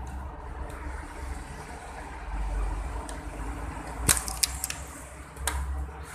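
Low rumbling handling noise on a handheld phone's microphone, with a few sharp clicks, a quick cluster about four seconds in and one more near the end.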